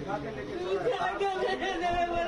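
People talking, several voices overlapping in conversation.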